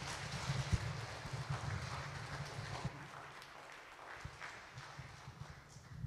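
Footsteps and shuffling with scattered low knocks from handheld microphones being moved, over a faint hiss that slowly fades.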